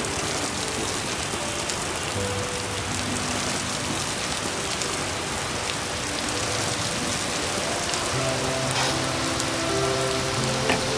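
Steady rain falling, a dense even hiss, with soft background music of long held low notes underneath.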